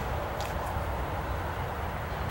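Steady outdoor background noise with a low rumble, and a faint click about half a second in.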